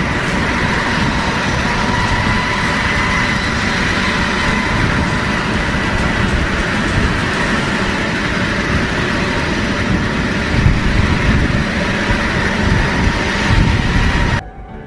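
A-10 Thunderbolt II jets' General Electric TF34 turbofan engines running at taxi power: a steady rushing jet noise with a high, even whine through it.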